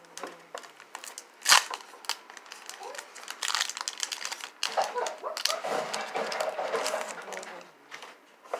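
Foil Pokémon booster pack wrapper being torn open by hand, crinkling and crackling. There is one sharp click about a second and a half in, and steady rustling through the second half.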